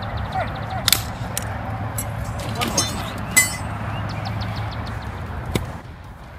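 Outdoor recording with a steady low rumble, like wind on the microphone, and faint voices, broken by a few sharp clicks, the loudest about a second in and about three and a half seconds in.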